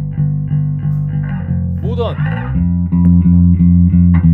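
Four-string electric bass played through a Simplifier Bass Station preamp and cabinet-simulator pedal, a steady run of repeated plucked notes. A little over halfway through, the tone shifts as the pedal's speaker-colour switch goes from bright to modern.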